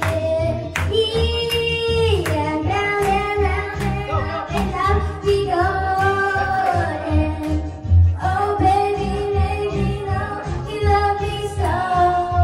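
A child singing into a handheld microphone over a backing track with a steady bass beat, holding long notes.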